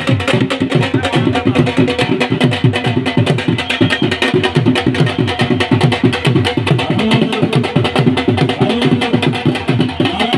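Dhol drums beaten in a fast, steady rhythm.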